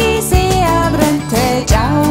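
Recorded song: a melody that slides between notes over a sustained bass, with low drum thumps about every second and a half.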